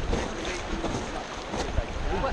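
Rushing whitewater river around an inflatable raft, with wind buffeting the microphone.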